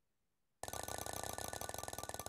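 Ticking sound effect of an on-screen spinning prize wheel, starting a little over half a second in as the wheel is set spinning: rapid clicks, one per segment passing the pointer, that begin to spread out as the wheel slows.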